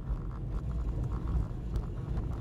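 A car driving along a cracked concrete country road: a steady, uneven low rumble of engine and tyres.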